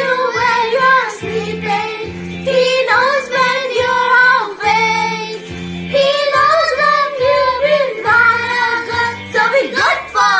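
A girl and a young boy singing a Christmas song together over a backing track with a steady bass line.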